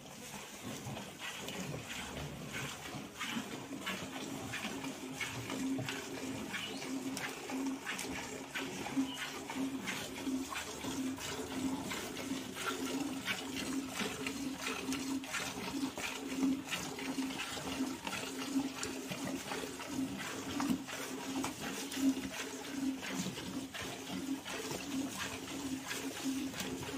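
A Gir cow being milked by hand: jets of milk squirt into a steel pail in a steady alternating rhythm of about two squirts a second.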